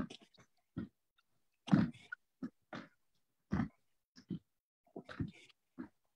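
People doing squat jumps on a wooden floor: short bursts of landing thuds and effortful, grunting breaths, about one a second.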